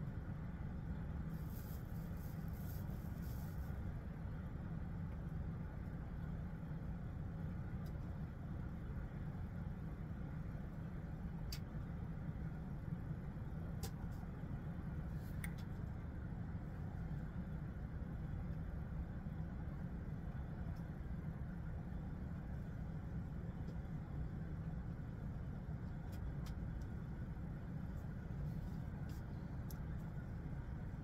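Steady low background rumble with a few faint clicks and a brief soft hiss near the start.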